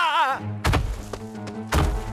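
Two heavy, deep thuds about a second apart, each with a low rumble after it: a cartoon dinosaur's footsteps, over background music.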